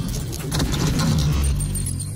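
Intro logo sound effects: a fast metallic clatter of many small clicks and jangles over a deep rumble.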